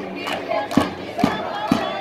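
A group of voices shouting a chant together over a drum beaten about twice a second.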